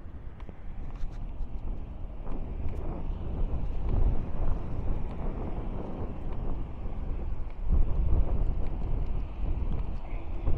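Wind buffeting the microphone over the road and engine noise of a car on the move: an uneven low rumble that swells about four seconds in and again near eight seconds.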